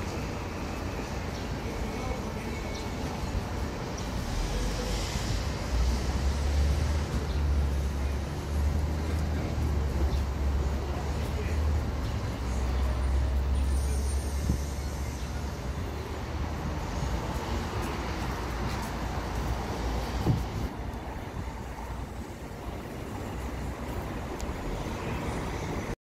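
Busy street traffic noise, with a vehicle engine's deep low rumble building from about five seconds in and fading by about sixteen seconds, and a single sharp knock about twenty seconds in.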